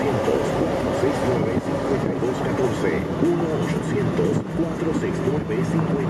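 Indistinct voices talking over the steady road and engine noise of a moving car, with a low hum coming in about two-thirds of the way through.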